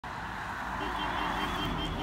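Highway traffic: the steady tyre and engine noise of a passing vehicle, growing a little louder.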